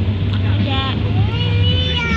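Drawn-out, high-pitched vocal sounds whose pitch arches up and down, heard twice over a steady low hum.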